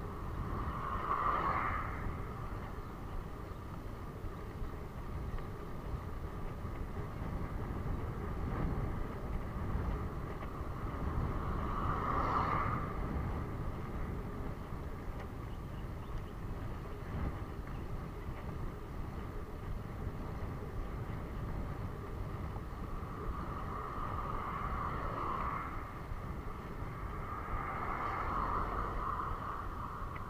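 Wind rushing over a handlebar-mounted camera on a moving road bike, with a steady low road rumble. A few louder swells come and go over a second or two each: near the start, about twelve seconds in, and twice near the end, as motor vehicles pass on the road.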